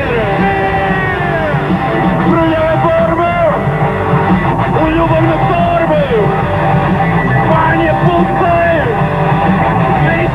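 Live rock band playing electric guitar, bass and drums, with a man singing into a microphone over it.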